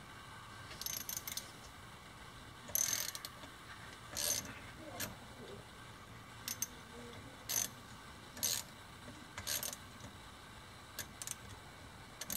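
Ratchet wrench clicking in short bursts at irregular intervals, about one burst a second, as it loosens a bolt in the end cap of an electric motor's metal housing.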